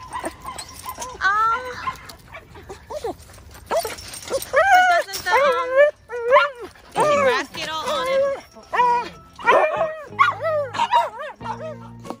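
Small dog barking, yipping and whimpering in rapid, high-pitched calls, densest in the second half. Background music comes in near the end.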